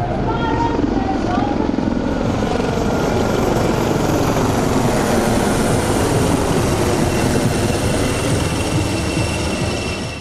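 Several HAL Dhruv twin-turboshaft helicopters flying a display overhead: a steady, dense rotor and turbine noise, with voices underneath.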